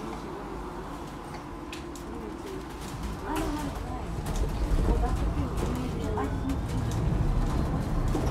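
Interior running noise of an Alexander Dennis Enviro400H hybrid double-decker bus: a low rumble that grows louder from about three seconds in as the bus moves off, with scattered rattles and clicks.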